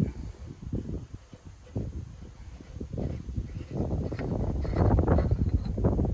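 Wind rumbling on the microphone, with irregular handling noise as the lower bowl of a billet aluminium oil catch can is unscrewed by hand. It grows busier and louder in the second half.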